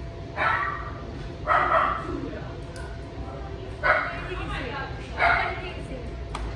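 A dog barking four times at uneven intervals, each bark short and sharp.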